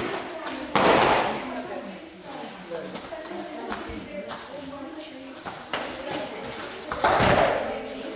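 Two loud thuds of kudo fighters sparring on tatami mats, one about a second in and one near the end as a fighter is taken down onto the mat; each rings briefly in the large hall. Voices murmur underneath.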